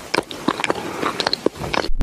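A dense run of irregular crunching, crackling clicks, like a chewing or crunching sound effect. It stops abruptly near the end.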